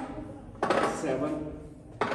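Loaded steel EZ curl bar clanking against the metal bar rest of a preacher curl bench as it is set down, with one sharp metallic clank about two-thirds of a second in that rings on briefly.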